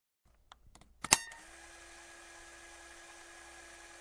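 A few faint ticks, then one sharp click about a second in, followed by a faint steady hum with a low tone underneath.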